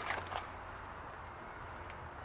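Quiet outdoor background with a low steady hum and a few faint clicks.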